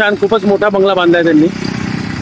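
A man's voice speaking for about the first second and a half, then a vehicle engine running with a steady low buzz.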